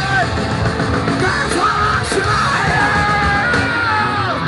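Punk band playing live: distorted electric guitars and drums with a shouted vocal over them.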